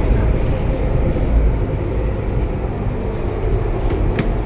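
Steady low rumble of a moving passenger rail car, heard from inside the carriage as it runs along an elevated track.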